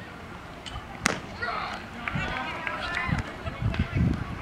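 A single sharp smack about a second in as the pitched baseball is struck or caught at the plate, followed by several spectators and players calling out at once.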